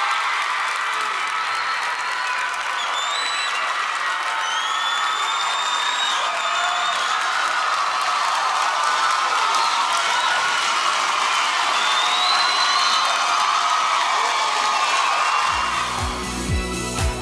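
Large studio audience cheering and applauding in a standing ovation, with high whistles and shrieks over the steady crowd noise. It cuts off near the end.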